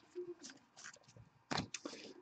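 Faint sliding and clicking of glossy trading cards as a stack is flipped through by hand, with a few short clicks about one and a half seconds in.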